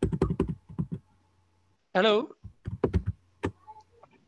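Computer keyboard typing: two quick runs of keystrokes, the first in the opening second and the second just past the middle, over a faint steady low hum.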